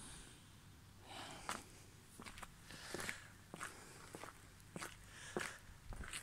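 Faint footsteps of a person walking at an even pace, a little under two steps a second, starting about a second in.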